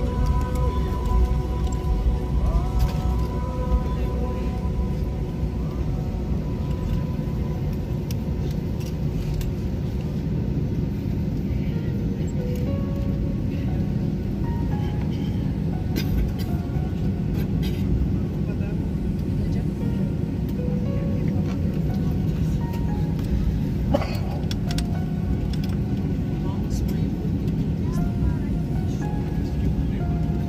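Steady low rumble inside an airliner cabin as the plane taxis on the apron, under background music with a few scattered clicks.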